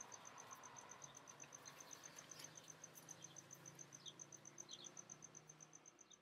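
Faint, steady cricket chirping: a high, even pulse repeating about seven times a second.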